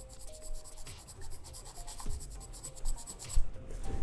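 Charcoal pencil scratching across drawing paper in rapid, even shading strokes as a dark value is built up.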